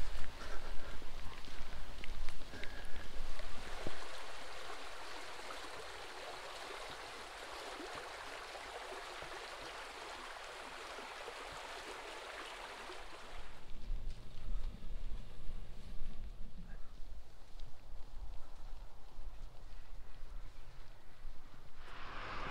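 Wind buffeting the microphone in gusts, then a steady rush of fast-flowing stream water over a rocky bed from about four seconds in until about thirteen seconds, after which the gusty wind on the microphone returns with a faint low hum.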